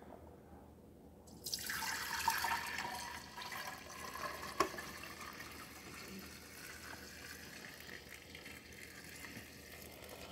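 Fresh milk poured from a pail through cheesecloth into a glass jar: the splashing pour starts about a second and a half in, is loudest at first, then settles into a steady stream filling the jar. One light tap partway through.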